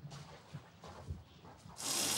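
Faint footsteps on grass, then near the end a kitchen tap starts running steadily into a sink, suddenly and much louder.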